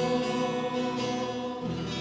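Congregation singing a hymn with guitar accompaniment, reaching the end of the song: the voices stop after about a second and a half and the final chord is held, beginning to fade.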